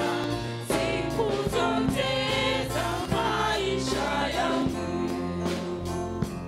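Church worship team singing a gospel song together, backed by a live band: voices over sustained bass guitar and keyboard notes, with occasional drum hits.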